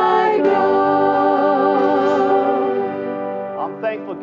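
A group of voices singing a hymn together, holding one long final chord with a wavering pitch that fades out near the end.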